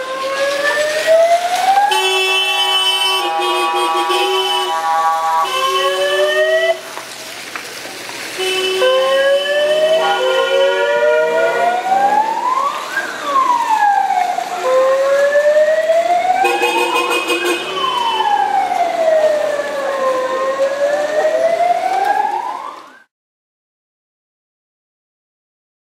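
Car horns blaring in several long blasts while an electronic siren horn wails slowly up and down over and over, the honking of a decorated wedding car convoy. The noise dips briefly after about seven seconds and stops abruptly a second before the end.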